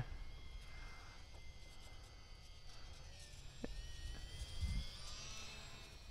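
Faint, distant whine of a small electric RC plane's twin motors and propellers flying overhead, its pitch drifting slightly, over a low rumble. A single faint click sounds a little past halfway.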